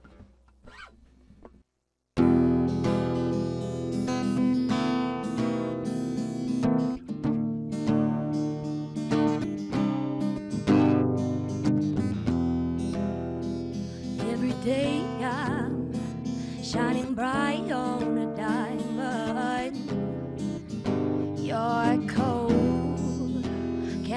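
After about two seconds of near silence, a Mitchell cutaway acoustic guitar starts playing abruptly at full level. A woman's singing voice comes in a little past halfway and carries on over the guitar.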